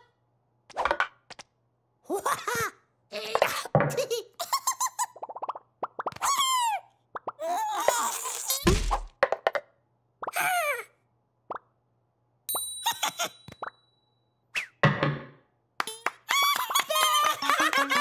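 Cartoon chick characters squeaking and chattering in short gibberish bursts, broken by comic sound effects including a deep thud about nine seconds in. Near the end, giggling over playful music.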